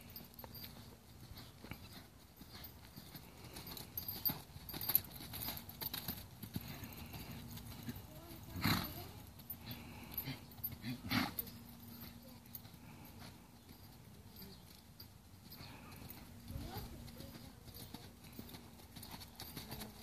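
Faint, muffled hoofbeats of a horse cantering on sand footing, with two louder knocks near the middle.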